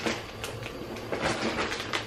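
Plastic food packaging rustling, with a few light knocks of items being set down, as groceries are unpacked on a kitchen counter.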